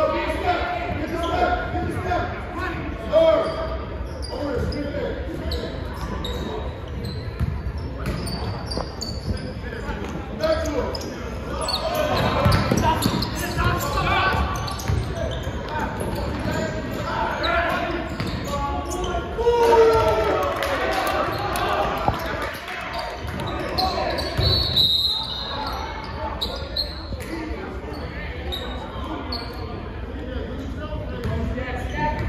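Basketball game in a gymnasium: a ball bouncing on the hardwood court among the calls and chatter of players and spectators, echoing in the hall.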